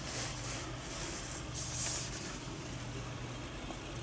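Steady low electrical hum with faint soft rustling of a hand moving over a desktop computer case, twice, once near the start and again about halfway through.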